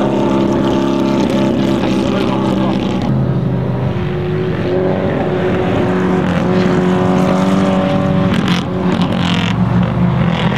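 Porsche 550 Spyder's 1500cc four-cam flat-four engine running as the car drives along. Its pitch drops about three seconds in, then climbs slowly through the middle before changing again near the end.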